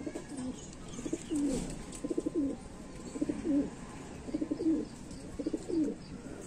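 Domestic pigeons cooing: a low coo repeated about five times, each a quick rolling flutter that ends in a slide of pitch.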